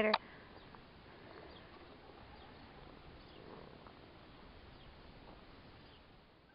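Faint, steady outdoor background noise with no distinct events, after the last bit of a man's laugh right at the start.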